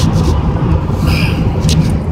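Steady low rumble of engine and tyres heard inside a vehicle's cab cruising at highway speed, about 80 mph, with a few brief hissy sounds on top.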